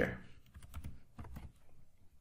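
Computer keyboard being typed on: several quick, light keystrokes in the first second and a half, entering a short closing HTML tag.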